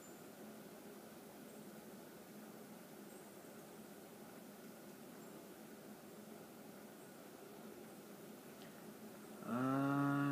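Quiet, steady room noise with no distinct event, then near the end a man's held, hummed "hmm" lasting about a second.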